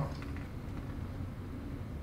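Faint, steady, low background noise of room tone, with no distinct sounds.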